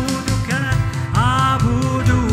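A live worship band plays: voices sing an Arabic worship song over strummed acoustic guitars, with keyboard and drums.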